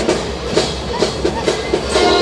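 A school brass band playing a march: drums and short clipped notes keep a steady beat of about four strokes a second.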